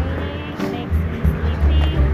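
Low, uneven rumble of outdoor street noise on a handheld phone microphone, surging and easing, with faint voices above it.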